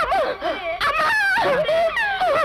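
A woman wailing and crying out in grief, a loud, high-pitched cry with long wavering glides in pitch.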